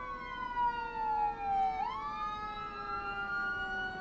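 Siren wailing: its pitch falls slowly for about two seconds, then climbs again, with a second, steadier drifting tone underneath.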